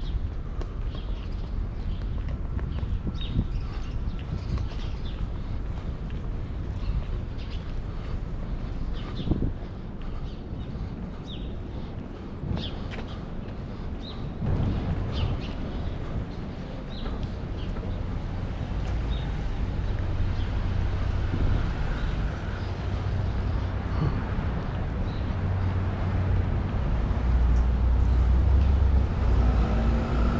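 City street ambience: a low traffic rumble that grows louder toward the end as passing cars come near, with short high bird chirps scattered through the first half.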